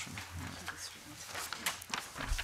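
Room noise of people shifting about a committee table: low background chatter, with papers rustling and a few short knocks and clicks.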